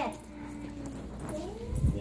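Small dog whining softly: one long, steady whine, then a shorter whine that rises and falls in pitch, with a low thump near the end.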